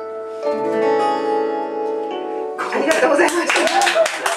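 The last chord of an acoustic guitar song rings on for about two and a half seconds, then clapping breaks out, with voices over it.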